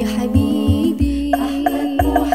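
Banjari-style sholawat song: a woman sings a held, slowly wavering melodic line in Arabic over deep frame-drum beats, several of them within two seconds.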